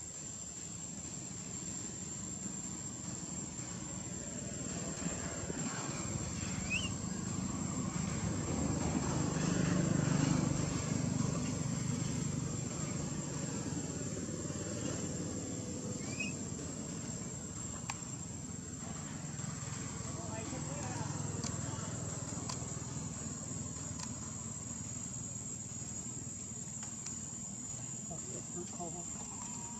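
Outdoor background sound: a steady high-pitched insect drone, with a low rumble that swells to a peak about ten seconds in and then fades, and faint voices.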